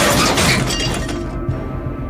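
Window glass shattering: the crash of breaking glass fades over about a second and a half, with music playing underneath.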